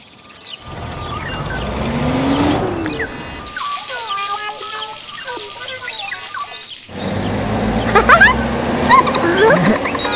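Cartoon sound effects over light music: a whirring with a slowly rising tone, then a run of short beeps and blips, then louder whooshing and juicy splashing with quick rising whistles, loudest about eight seconds in.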